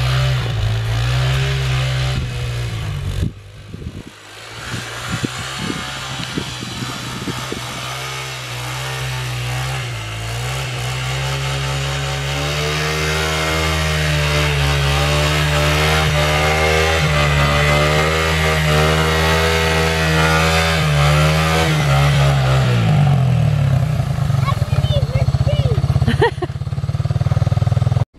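Three-wheeled ATV engine running as it is ridden through snow, its pitch rising and falling with the throttle, then dropping off near the end.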